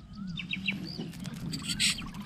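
Birds chirping over open water: a few short, curved calls in quick succession in the first second, over a low steady hum. A brief loud burst of hiss comes near the end.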